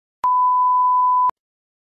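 A 1 kHz test tone, the line-up signal that plays with colour bars. It is a steady, pure beep lasting about a second, starting and stopping abruptly with a click at each end.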